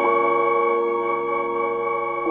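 Novation Summit polyphonic synthesizer sounding a held chord of steady tones. A note joins right at the start, then the chord sustains unchanged and grows a little quieter.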